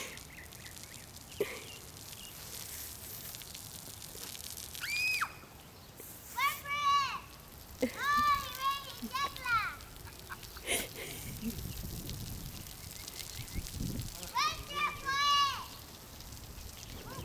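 Children squealing in short high-pitched cries, two or three at a time, several times over, above a steady hiss of water spray from a lawn sprinkler.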